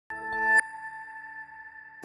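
Short electronic news-ident sting. A synth chord swells for about half a second and ends in a bright chime that rings on and slowly fades.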